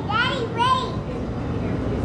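Speech: a high-pitched voice says a few short words in the first second, over a steady low background hum.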